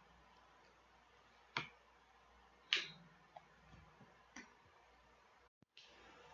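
Three sharp clicks about a second apart, the middle one the loudest, with a fainter tick between the last two, over faint background hum; the sound cuts out briefly near the end.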